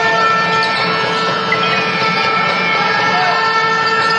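A horn blaring in a basketball arena: one loud, steady pitched note held without a break, over crowd noise and shouts.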